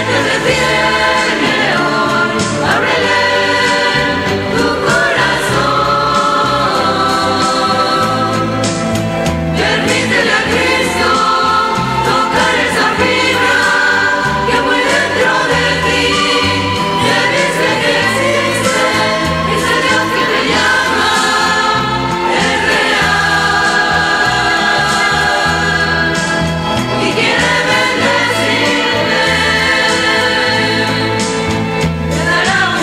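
A Christian church vocal ensemble singing a Spanish-language hymn together, with instrumental accompaniment. A bass line changes note about every second underneath.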